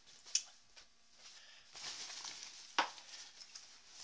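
Nylon fabric rustling as a dry-sack food bag is pushed down into a backpack and the pack is handled, with a sharp click near the start and a short, louder swish of fabric a little before the end.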